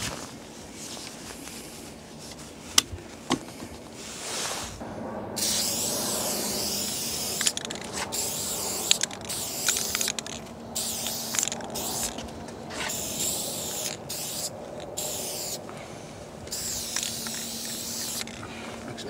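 Aerosol spray paint can fitted with a New York fat cap converted to a female cap, sprayed in a series of hissing bursts of a second or two each with short gaps between, starting about five seconds in; a couple of clicks come before the first burst.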